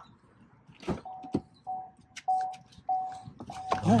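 Chevy Bolt's in-cabin warning chime beeping five times at one steady pitch, a little over half a second apart. A couple of sharp clicks come just before and around the first beep.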